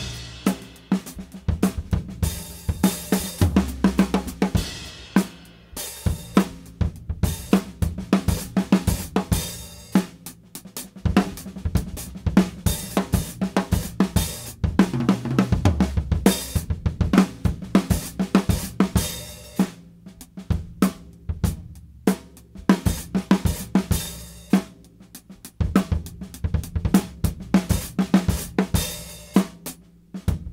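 Acoustic drum kit played with sticks: a groove on hi-hat, snare and bass drum running into fill-ins of accented strokes spread over snare, toms and cymbals, built from an accent study. Every so often a crash cymbal and bass drum land together to mark the phrase.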